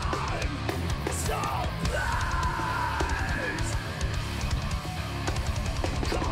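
Metal band playing live: distorted guitars, bass and busy drums, with a female singer's vocals. A long held note sounds over the band from about two seconds in.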